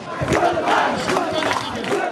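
A crowd of people shouting, many voices overlapping at once.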